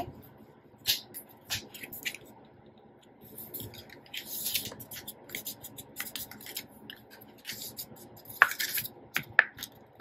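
Black cardstock being handled on a cutting mat: flaps folded over and slid into place, with soft paper rustling and scraping in the middle and a few light taps and clicks, among them a sharper click about eight and a half seconds in.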